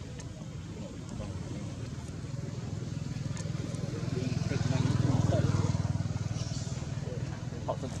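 A motor vehicle engine passing by. Its low running sound swells to its loudest about five seconds in, then fades away.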